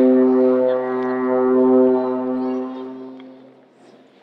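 One long, low, horn-like note from a wind instrument, held at a steady pitch and then fading out near the end.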